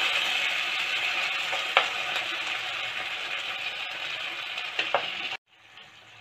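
Tomato pulp with onions sizzling steadily in a nonstick pan as a spatula stirs it, with a few light scrapes against the pan. The sound cuts off suddenly near the end.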